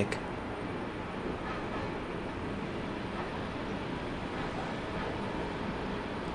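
Steady background noise: an even hiss with a faint, constant high whine, with no distinct events.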